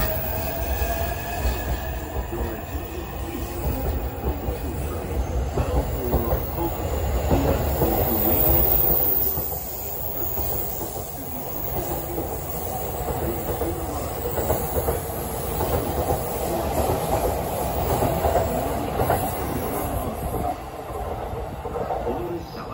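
JR E531-series electric commuter train running along the platform, with a steady rumble of wheels on rail and clacking over the rail joints. Thin squealing tones come through in the first couple of seconds.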